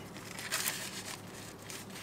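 Paper wrapper crinkling as it is handled over a plastic takeout tray, in short scattered rustles.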